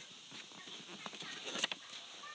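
A sheet of paper being handled and folded by hand, with soft rustling and a few sharp crinkles and taps, most of them about one and a half seconds in.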